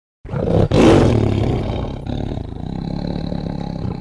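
A loud roar sound effect. It comes in suddenly about a quarter second in, is loudest near one second, then holds at a lower level until it cuts off suddenly near the end.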